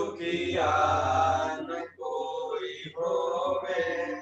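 Vedic mantras of a havan (yajna fire ritual) chanted aloud as a steady recitation, in three phrases with short breaks between them.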